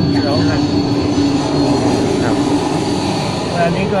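A steady engine rush with a low hum that holds for about three seconds, under a man's brief speech.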